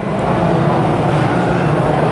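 A steady, fairly loud background rumble with no speech in it.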